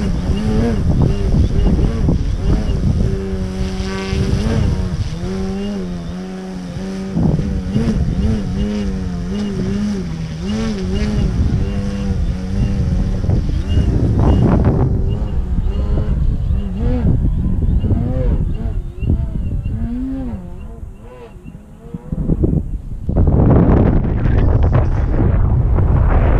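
Pilot RC 60-inch Laser aerobatic RC plane's motor and propeller, its tone wavering up and down in pitch through the aerobatics, over heavy wind rumble on the microphone. The plane's tone fades after about twenty seconds, and loud wind noise on the microphone fills the last few seconds.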